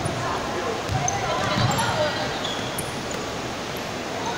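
A basketball bouncing on a gym floor during a game, a few dull thumps, with short high sneaker squeaks on the court.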